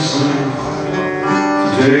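Acoustic guitar fingerpicked in a slow ballad, with a man singing held notes over it; a new sung line starts near the end.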